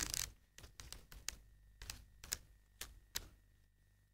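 Pages of a paperback book being leafed through by hand: a faint, irregular string of short paper flicks and rustles.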